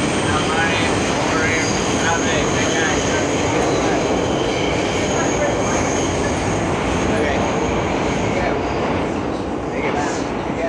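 Subway train running between stations, heard from inside the car: a steady, loud rumble and rattle with a faint high whine above it. A few voices come through in the first couple of seconds.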